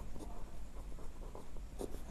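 Pen writing on paper: faint, irregular scratching strokes as a line of text is written.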